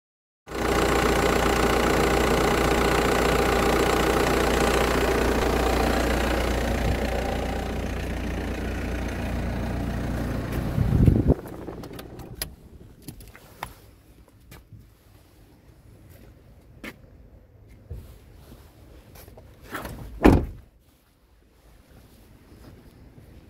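A Citroën C4 Cactus engine running steadily. About 11 seconds in it surges briefly and shuts off. It is followed by small clicks and a single loud thump near the end, a car door being shut.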